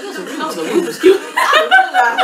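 Two women laughing, building from chuckles to loud, hearty laughter about halfway through.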